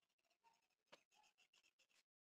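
Faint scratchy rustle of a comb being worked through long hair, with a sharper click about a second in.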